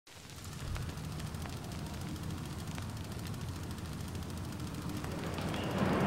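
A low, steady rumble that fades in at the start and holds, with a few faint scattered clicks, growing a little louder near the end.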